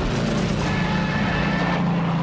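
A propeller aircraft's piston engine running with a steady drone.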